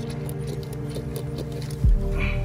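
Background music with sustained notes, over a patter of small crisp clicks as a knife blade is worked into a spiny porcupine pufferfish on wet sand. A single low thump comes near the end.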